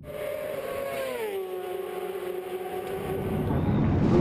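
A high-revving racing motorcycle engine passing at speed. Its note glides down in pitch about a second in as it goes by, then holds steady at the lower pitch.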